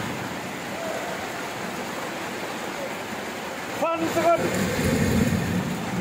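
Steady rain falling, a constant even hiss. About four seconds in come two brief pitched calls, then people talking in the background.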